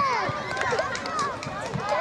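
Several voices shouting and calling over one another, the high, overlapping calls of young players and onlookers reacting to a goalkeeper's save.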